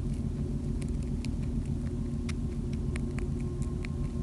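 Steady low rumble, with small crisp clicks scattered over it several times a second from a young wild rabbit chewing hay.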